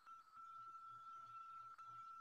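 Near silence: room tone through a webcam microphone, with a faint steady high-pitched tone.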